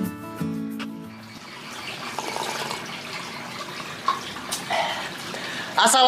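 Acoustic guitar music ends within the first second, followed by a steady sound of running water at the fish pond.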